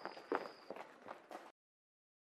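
Faint, irregular footsteps of several children on cobblestones, with one brief louder sound about a third of a second in. The sound cuts off to total silence about a second and a half in.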